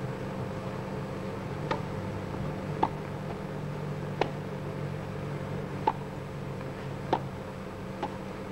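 Tennis ball being hit during a point on a grass court: five sharp, short pocks spread about a second or more apart, as the serve is struck and the rally follows. Under them runs a steady low hum and hiss from the old broadcast tape.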